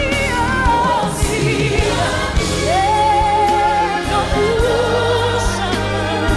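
Gospel music: a singer holding long notes with a wide vibrato over a sustained bass line and a steady beat.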